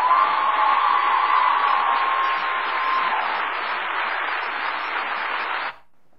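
Audience applauding, a steady wash of clapping after a line in a speech, which cuts off abruptly near the end.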